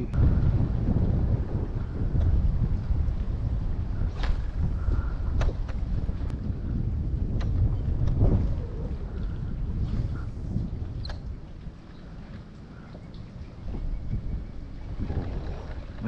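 Wind buffeting the microphone of a camera on a kayak, a heavy low rumble that eases off for a couple of seconds past the middle. A few light clicks and knocks are scattered through it.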